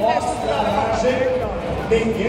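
A woman talking to the camera, with crowd chatter behind her.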